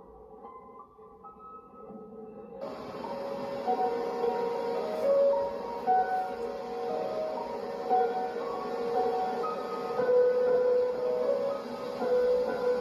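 Piano playing a slow melody. About two and a half seconds in, it cuts to a brighter, fuller recording of piano playing.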